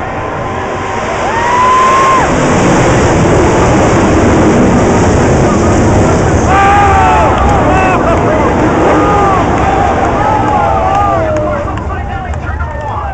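Pack of winged sprint cars' 410 V8 engines running hard as the field passes close by, a loud steady roar that swells about a second and a half in and eases near the end. Voices from the crowd shout over it.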